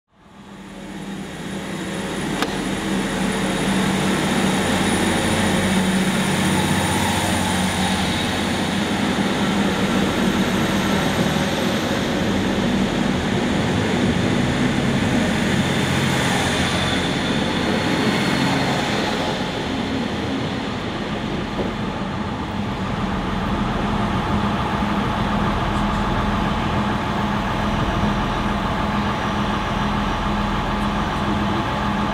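Yellow NS DM '90 diesel multiple unit at a station platform, its engine running with a steady low hum and rail noise, fading in at the start. A brief hiss or squeal rises partway through.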